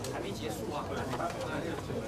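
Indistinct background chatter of several people talking at once in a large meeting room, with no single voice standing out.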